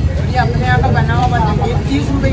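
People talking over a steady low rumble of background noise.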